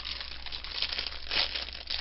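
Clear plastic packaging bag being ripped open by hand, crinkling and crackling, with a louder rip about one and a half seconds in. It makes so much noise.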